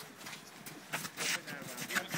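Scuffs and footfalls of players moving on an artificial turf pitch, a few short noisy strokes, with faint shouts of players in the background.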